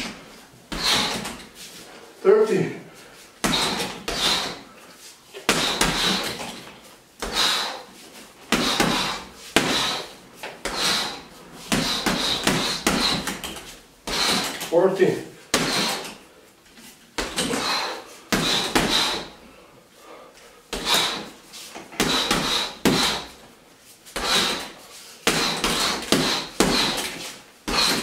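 Boxing gloves and knees striking a hanging heavy bag in a steady series of thuds, about one or two a second, in a small room.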